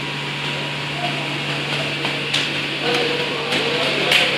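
Steady low hum and hiss of background noise, with faint voices talking in the background near the end.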